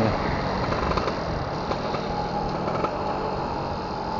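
Yamaha F1ZR's 110cc two-stroke single-cylinder engine running at a steady pace while riding, mixed with wind and road noise.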